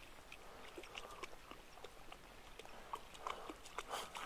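Faint, irregular splashing and sloshing of shallow pond water as a Finnish Spitz paws and digs at the muddy bottom, with a louder splash near the end.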